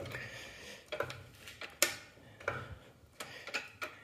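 A handful of short metallic clicks from the forward/reverse selector on a Clausing metal lathe's headstock being worked by hand, the sharpest about two seconds in.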